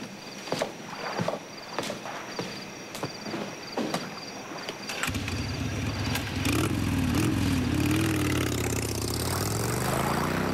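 Footsteps on stone steps as a man walks away, over a faint steady chirping of crickets. About halfway through, low sustained music swells in, a slowly shifting chord that grows louder.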